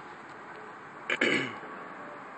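A person clears their throat once, briefly, about a second in.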